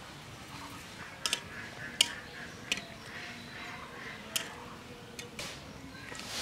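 Puri deep-frying in hot oil in an iron karahi: a steady sizzle broken by about half a dozen sharp crackles at irregular moments.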